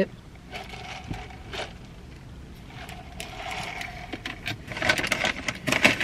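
An iced sparkling drink sucked up through a plastic straw in a few soft pulls, followed by light clicks of ice and cup handling near the end.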